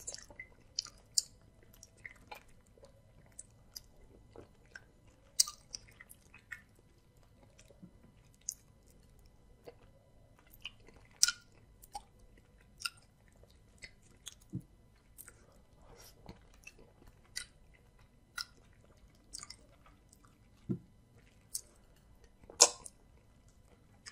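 Close-miked mouth sounds of a person eating amala with soup by hand: irregular wet clicks and smacks of chewing, a few of them loud, scattered through the whole stretch.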